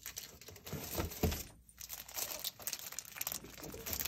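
Plastic packaging crinkling and rustling as it is handled, with scattered sharp crackles and a louder cluster about a second in.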